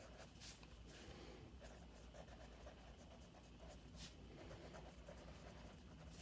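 Faint scratching of a pen writing on paper, with a few light ticks of the pen tip.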